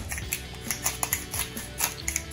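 Background music with a quick, irregular run of small dry clicks from a hand pepper grinder being twisted to add black pepper.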